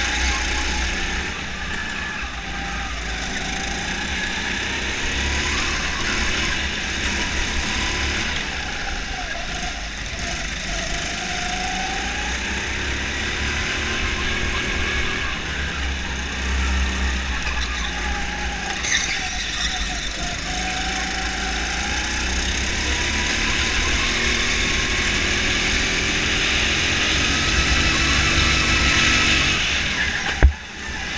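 Go-kart engine running hard under the driver, its pitch repeatedly rising and falling as the kart accelerates down the straights and slows into corners, over a steady heavy low rumble.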